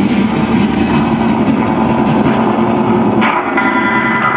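Live electric guitars through amplifiers and effects pedals, playing a loud, dense wall of noise with held tones in it. About three seconds in, a new cluster of higher sustained tones comes in.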